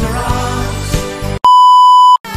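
Song music plays, then cuts off about one and a half seconds in. After a brief silence, a loud, steady electronic beep like a TV test-pattern tone sounds to the end.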